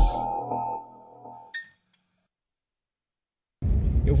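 Electronic intro music fading out over about a second and a half, followed by dead silence. Near the end, a car cabin's low road and engine noise cuts in suddenly.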